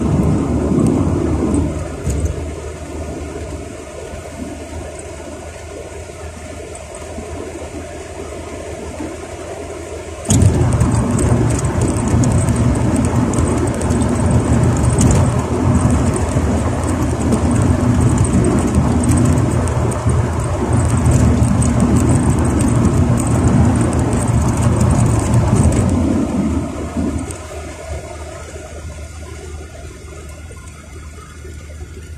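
Road and engine noise heard inside a moving car's cabin, a steady rumble that becomes abruptly louder about ten seconds in and eases off again near the end.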